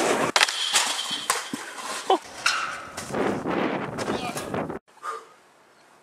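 A snowboarder crashing and sliding in snow: a rushing scrape of board and body on snow with several knocks and a short cry, cut off sharply about five seconds in.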